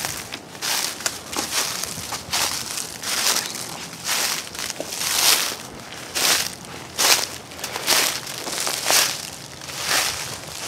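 Footsteps crunching through dry fallen leaves at a steady walking pace, about one loud crunch a second.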